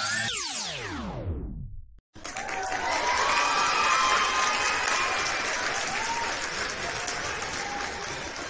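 Music that ends in a steep sweep falling in pitch, cut off about two seconds in. Then a dense hiss of insects with whistled bird calls over it.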